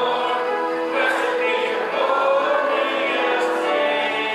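Hymn sung by a group of voices with instrumental accompaniment, in long held notes.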